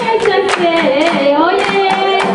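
Group singing a Djiboutian folk dance song, the melody moving up and down, with a steady beat of hand claps underneath.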